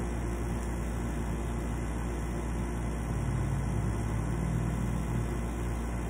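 Steady low hum with an even background hiss, swelling slightly in the middle.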